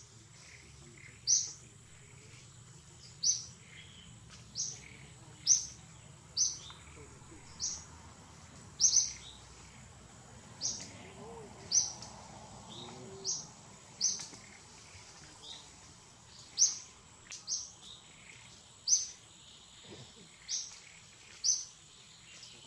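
A bird repeating a short, sharp, high-pitched chirp about once a second, at irregular intervals.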